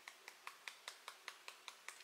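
Fingertips tapping on the side of the other hand at the EFT karate-chop point: faint, even taps about five a second.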